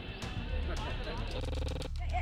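A voice talking over music, with a steady low rumble underneath. Near the end a held, even tone sounds for about half a second and breaks off sharply.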